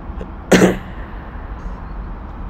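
A single sharp cough about half a second in, over a steady low background hum.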